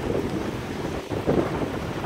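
Wind buffeting an outdoor microphone: a steady low rush.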